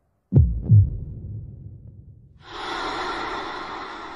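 A heartbeat sound effect: two deep thuds in quick succession, a lub-dub, about a third of a second in. Past the halfway point a breathy rushing sound begins suddenly and slowly fades.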